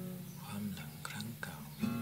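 Acoustic guitar playing the opening of a song, with sustained notes. A short voice is heard over it in the middle.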